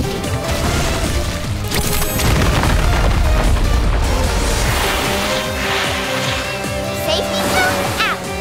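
Cartoon action-scene soundtrack: background music layered with noisy rushing and booming sound effects.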